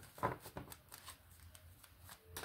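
Faint shuffling and handling of a tarot deck by hand: soft papery clicks of cards, loudest about a quarter second in, then only light rustle.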